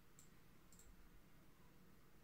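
Near silence: faint room tone with two faint, short clicks about a fifth of a second and three-quarters of a second in.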